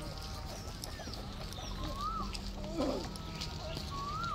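Birds calling over a low steady hum: a short whistled call that rises and falls, heard twice about two seconds apart, and a brief, rougher call just before the second.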